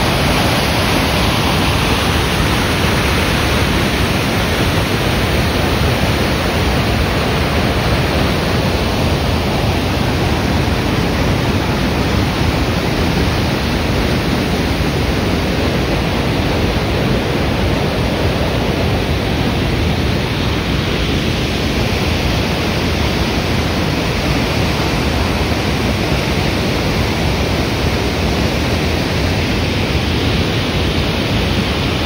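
Water released from Takizawa Dam gushing out of its outlet and crashing into the pool below: a loud, steady rush.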